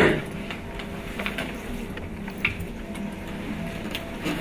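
Film soundtrack played back over a hall's loudspeakers: sustained music tones with scattered faint clicks, after a brief louder sound right at the start.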